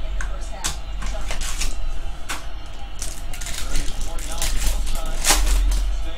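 Foil trading-card pack wrapper crinkling and tearing open in the hands, a run of sharp irregular crackles, over a steady low hum.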